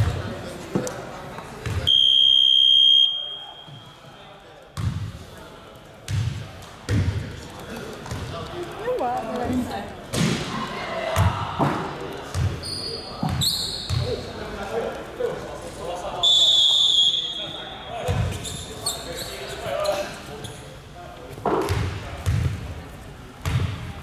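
A basketball bouncing on a hardwood gym floor, with talk around it. A loud steady buzzer sounds for about a second near the start, and again about two-thirds of the way through.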